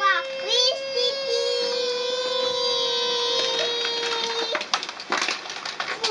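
A small child holding one long sung 'aaah' for about four seconds, the pitch stepping slightly lower about a second in, then stopping. Some short knocks and clicks follow.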